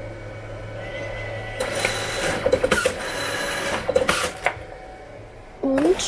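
DNP dye-sublimation photo printer running as it finishes a print and feeds it out: a motor whir over a steady hum, getting louder partway in, with a quick run of clicks in the middle.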